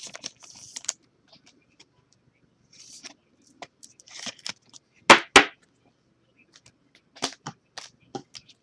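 Trading card and clear plastic sleeve being handled: short rustles of plastic and card sliding, scattered small clicks, and two sharp clicks about five seconds in, a quarter second apart, which are the loudest sounds.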